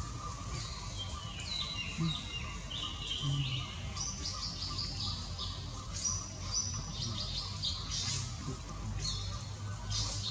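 Birds chirping: many short, high notes repeated throughout, some series stepping down in pitch, over a steady low rumble.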